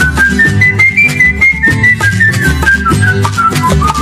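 Flute solo in a Cuban son band recording: the flute climbs in short stepped notes and then winds back down, over a steady bass line and percussion.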